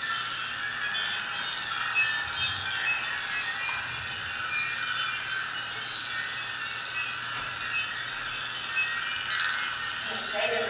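A continuous shimmer of many overlapping, high tinkling chime notes, like wind chimes, with a single sharp click about halfway through.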